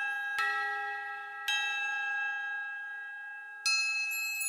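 Slow background music of struck bell-like chime tones, each left to ring on. New strikes come in about half a second in, at about a second and a half, and again near the end.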